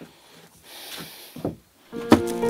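Quiet handling sounds of a carved wooden piece being moved: soft rubbing and rustling, then a single light knock about one and a half seconds in.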